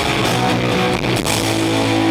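Live rock band playing loud through PA speakers, guitars and drums without vocals, with a chord held steady from about a second and a half in.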